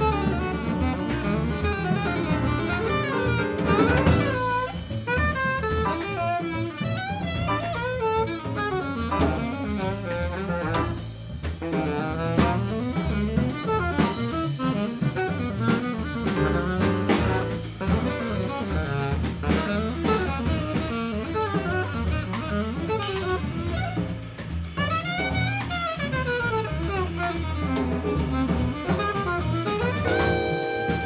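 Live jazz: an alto saxophone plays quick, running melodic lines over double bass and a drum kit with busy cymbals.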